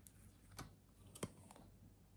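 A few faint light clicks and taps of hands handling a soy wax candle, the sharpest a little after a second in.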